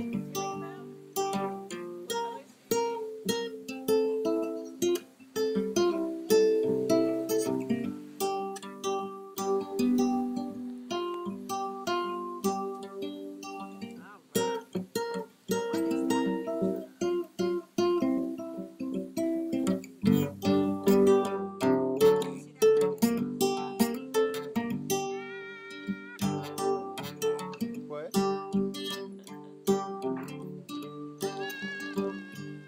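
Background music played on acoustic guitar: a steady run of plucked notes.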